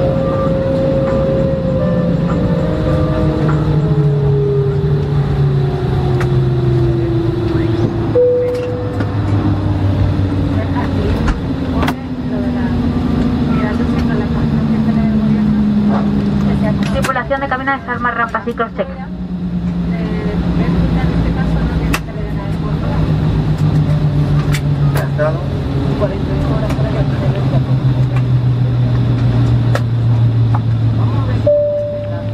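Airliner jet engines heard from inside the cabin while taxiing after landing: a steady hum whose tones slide slowly down in pitch over the first half, then hold lower. A person speaks and laughs briefly a little past halfway.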